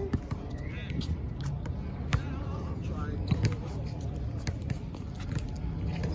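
A basketball bouncing a few times, at uneven intervals, on a hard outdoor court, with players' voices in the background.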